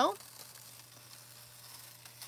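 Faint, soft rustling of metallic foil sheets being handled, over a steady low hum.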